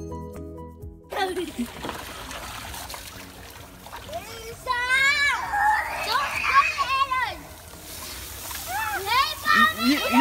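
Music for about the first second, then a garden hose spraying water onto children and into a kiddie pool, with steady hissing and splashing. Children scream and shout over the water about halfway through and again near the end.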